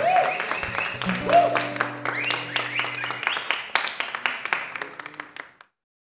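Scattered clapping and cheering voices at the end of a live acoustic song, with a shout of "wow". The applause cuts off abruptly shortly before the end.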